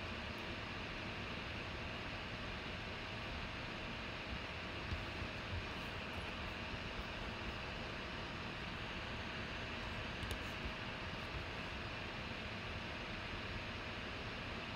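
Steady background hiss and hum of room tone, with a faint steady tone running through it and a few small faint ticks around five and ten seconds in.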